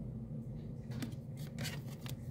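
Glossy trading cards being handled and flipped in the hand, giving a few soft clicks and rustles, mostly in the second half, over a low steady hum.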